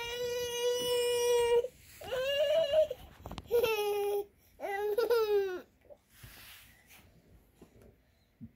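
One-year-old baby crying: one long, steady wail, then three shorter cries, stopping about six seconds in.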